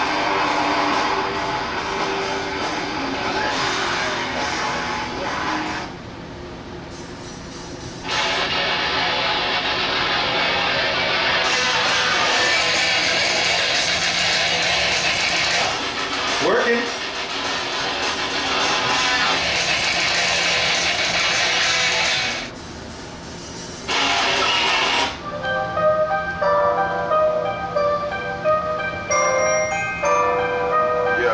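Music from an iPad played through a 1-inch speaker driven by a tiny 9-volt keychain amplifier, working but not of super sound quality. The playback cuts out briefly twice, and near the end a different track with a chiming melody plays.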